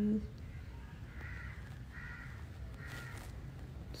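An animal calling faintly three times, short harsh calls a little under a second apart, over a steady low rumble.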